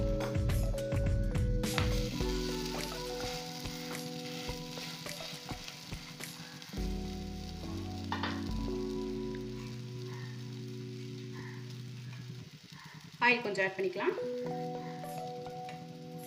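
Oil sizzling steadily under a thavala adai, a rice and lentil batter cake, as it fries in a nonstick pan. A wooden spatula clicks and scrapes against the pan during the first couple of seconds.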